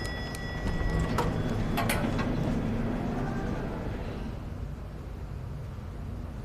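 Elevator doors closing with a few sharp clicks about one to two seconds in, then the low steady hum of the elevator car, slowly fading.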